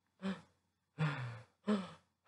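A person's voice making three short, breathy out-of-breath sounds, the second a little longer than the others.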